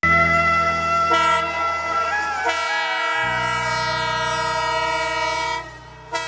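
Instrumental introduction of a Nepali song played by a band: sustained chords with a melody line bending above them, the bass note changing about three seconds in. The music drops away near the end.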